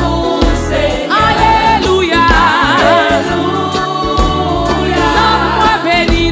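A woman singing a gospel worship song into a microphone over band accompaniment, with a held, strongly wavering vibrato note near the middle.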